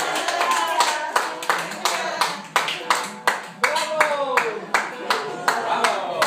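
Audience clapping by hand, distinct claps at several per second, with voices talking over it.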